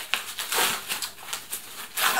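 Paper wrapping crinkling and rustling in short, irregular strokes as it is pulled off a glass jar of jam.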